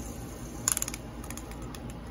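A quick run of light clicks about two-thirds of a second in, then a few fainter ticks: a plastic fidget spinner being handled and knocked right at a macaw's beak.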